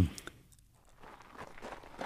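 Footsteps walking, a run of short irregular steps that begins about a second in and grows louder.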